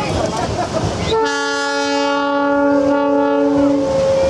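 A paddle steamer's steam whistle sounding one long steady blast of about three seconds, starting about a second in, over wind and water noise.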